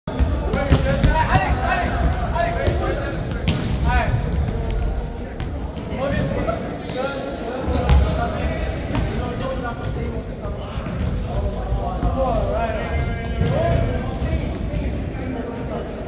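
A volleyball being struck by hands and arms and bouncing on a wooden gym floor, in repeated sharp smacks at irregular intervals, with players' indistinct voices and calls; everything echoes in a large hall.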